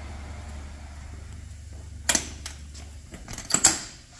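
Steel door of a powder coating oven swung shut with a bang about two seconds in, then its latches clanking closed near the end. A low steady hum underneath stops about three seconds in.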